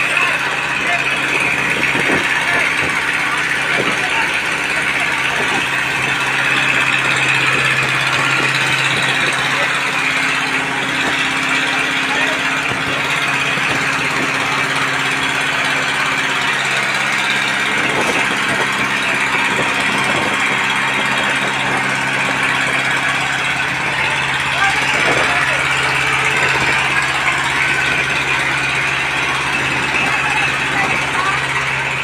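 A fire engine running steadily, most likely driving its pump for the charged hoses, its pitch dipping slightly about sixteen seconds in. Over it sit a loud, even hiss and the indistinct voices of people around the fire.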